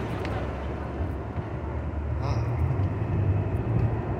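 Steady low rumble with no speech, and one brief faint higher sound a little past halfway.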